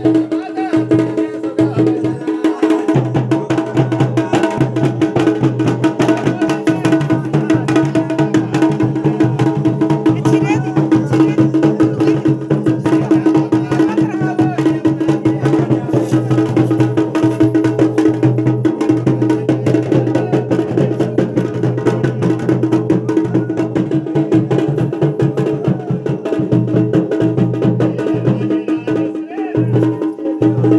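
Traditional devotional procession music: fast, dense drumming over a steady held drone note, with voices mixed in.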